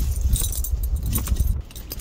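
Wind buffeting the microphone on open ice, a low rumble with scattered faint clicks above it, easing off briefly near the end.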